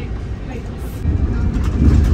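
Low rumble of a moving vehicle heard from inside its cabin, stepping up louder about a second in.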